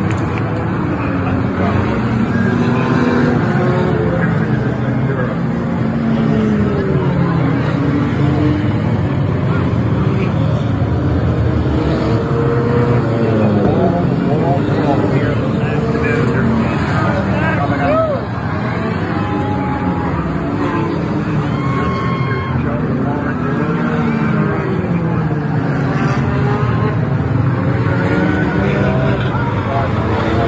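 A field of four- and six-cylinder enduro race cars running laps together, their engines rising and falling in pitch as they pass, over a steady crowd murmur.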